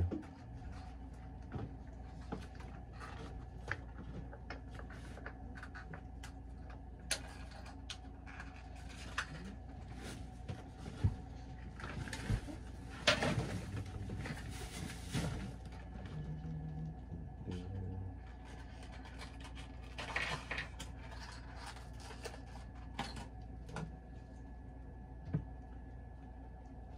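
Scattered clicks, knocks and rustles of hands working with electrical wire and small crimp connectors, over a steady low hum.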